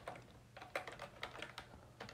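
Faint computer keyboard typing: a handful of irregular key presses, inserting blank lines of text.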